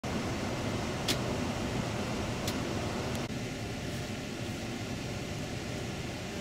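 Steady cabin noise of a Setra coach on the move: engine and tyre rumble with a hiss over it. Two sharp clicks come about one and two and a half seconds in, and the hiss drops a little just after three seconds.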